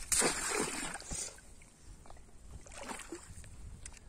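Shallow water splashing and sloshing as hands grope for fish inside a bamboo cage fish trap, loudest in the first second, then a few softer splashes.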